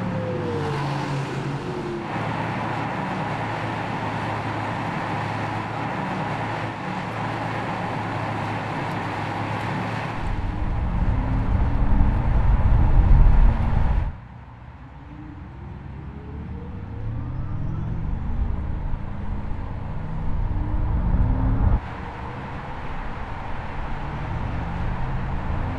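Audi R8 e-tron electric sports car on the move: steady road and wind noise at first, then a louder low rumble with rising tones as it accelerates. The sound changes abruptly several times, and repeated rising tones come in the second half.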